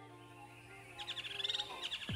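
Held music notes fading away, then birds chirping in quick high trills from about a second in.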